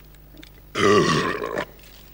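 A man burping once, loudly, for just under a second, starting about three-quarters of a second in, after gulping beer.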